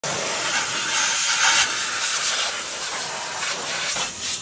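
Compressed air hissing steadily and loudly from a hose nozzle, swelling a little about a second and a half in.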